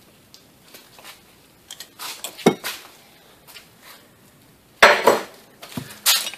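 Wrench clicking and clinking on the transmission's plastic output speed sensor and the metal case as the sensor is loosened: scattered light clicks, a sharper clink about two and a half seconds in, and a louder clatter about five seconds in.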